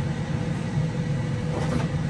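Steady low machine hum, with a brief scrape of a serving spoon in a foil pan of macaroni and cheese near the end.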